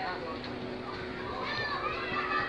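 Indistinct background chatter of voices, some of them high like children's, over a faint steady hum.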